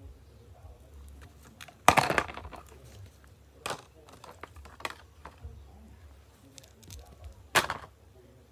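Small props, a plastic water bottle among them, being set down and knocking against a plastic tub: four sharp knocks with small rattles between, the loudest about two seconds in.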